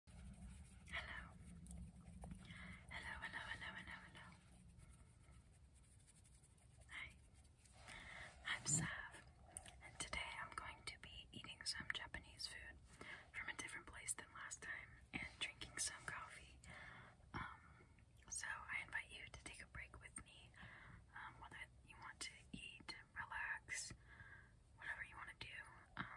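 A woman whispering close to the microphone, with a few sharp clicks scattered through it.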